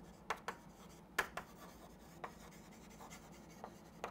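Chalk writing on a chalkboard: a faint scatter of short taps and scratchy strokes at uneven intervals as letters are written.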